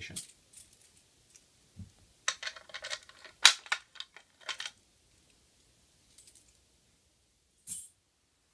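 Keys jangling on a key ring, with sharp metallic clicks as a key goes into the lock of a Simplex 2099 pull station and turns to reset it. The rattling and clicks come in a cluster from about two to five seconds in, loudest around the middle, with one more short click near the end.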